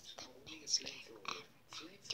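A young girl whispering and talking softly, the words too quiet to make out.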